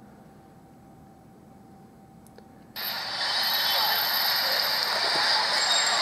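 Faint room tone, then about three seconds in a sudden start of steady, hissy street ambience, crowd and traffic noise, played through a smartphone's small loudspeaker as a video begins.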